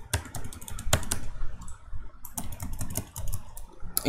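Typing on a computer keyboard: a run of irregular key clicks, with one louder click about a second in.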